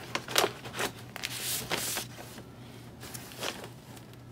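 Paper handling: a large paper envelope rustling as stamp album pages slide out of it. There are a few sharp crinkles in the first second and a longer sliding rustle just before the middle.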